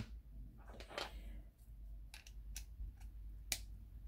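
Faint handling noise: a few short clicks and taps of small metal hot-end parts and a plastic holder being picked up and handled, the sharpest about three and a half seconds in.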